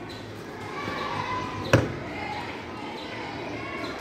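A single sharp wooden knock a little before the middle: the lid of a small wooden box dropping shut. Faint voices murmur underneath.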